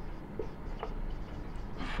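Whiteboard marker writing on a whiteboard: faint scratching strokes with a couple of light ticks as the tip meets the board.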